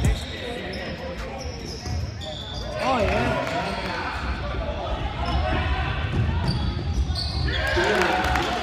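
Game sound of an indoor basketball game: a basketball bouncing on the hardwood court, with voices from players and spectators. A voice calls out about three seconds in and again near the end.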